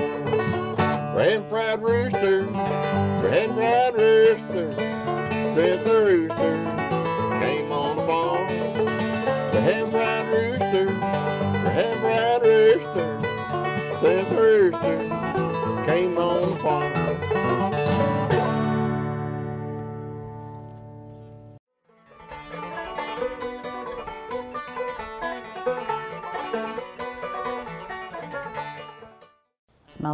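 Bluegrass banjo and acoustic guitar playing together, ending about 19 seconds in on a final chord that rings out and dies away. After a brief silence, softer music plays and fades out near the end.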